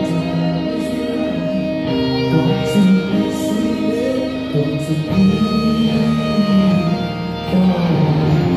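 Rock band playing live on stage, with electric guitar to the fore, heard from the audience in a concert hall.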